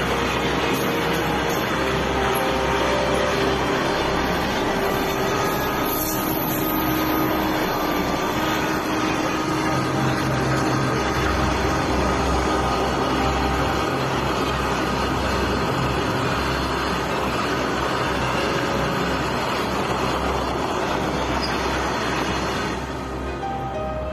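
A freight train of open hopper wagons passing close by at speed: a loud, steady rumble of the wagons and their wheels on the rails.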